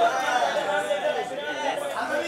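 Several people talking and calling out over one another in a busy chatter.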